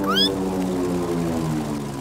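A cartoon lizard's quick rising squeak as it leaps away. Under it and after it runs a long held low tone that steps slightly lower twice.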